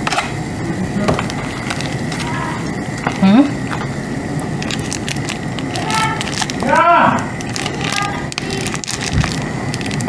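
Large stainless-steel pot of pasta and lentils boiling hard over a gas burner, a steady bubbling. Brief hums from a woman's voice break in a few times, most clearly about six and seven seconds in.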